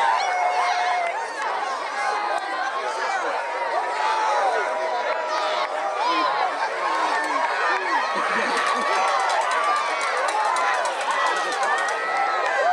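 Crowd of spectators at a track race, many voices talking and calling out at once, overlapping throughout. About two-thirds of the way through, a quick run of light clicks joins in.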